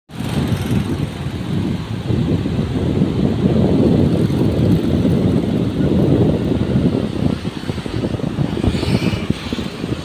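Wind buffeting the phone's microphone: a loud, uneven low rumble, with the wash of breaking surf beneath it.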